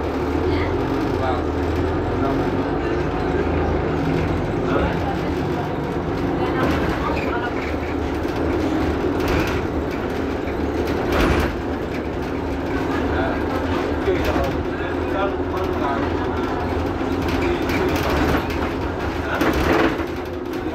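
Mercedes-Benz Citaro G articulated city bus standing at idle: a steady low hum with several constant tones. A sharp knock about eleven seconds in and another near the end.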